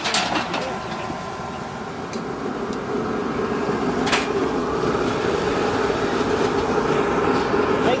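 Background talk from a group of people, growing a little louder partway through, with one sharp knock about four seconds in.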